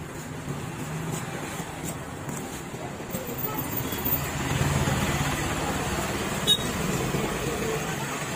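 Long knife scraping scales off a large rosy snapper on a wooden block, over a steady background rumble of market and traffic noise. A sharp knock about six and a half seconds in.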